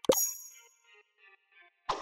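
Edited-in subscribe-button sound effect: a sudden pop with a bright ringing chime that fades within about half a second, followed by faint sparse musical tones. A second sudden sound comes near the end.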